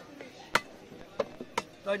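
A large fish-cutting knife chopping through a catla fish into a wooden chopping block: one sharp chop about half a second in, then two lighter ones around a second and a half.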